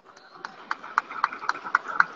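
A quick, even series of sharp taps or claps, about four a second, starting about half a second in.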